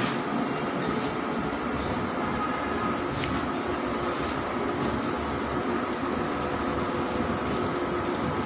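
Large-format inkjet banner printer running, its print-head carriage travelling back and forth over the flex sheet: a steady mechanical whir with a few light ticks.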